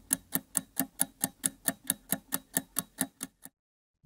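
Rapid clock-like ticking sound effect on a segment title card, about five even ticks a second, that cuts off suddenly about three and a half seconds in.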